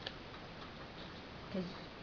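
A single sharp click just after the start, then a few faint ticks, from stiff acetate plastic cut-outs being handled and folded by fingers.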